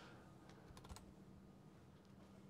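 Near silence with a few faint computer-keyboard clicks about a second in, over a low steady hum.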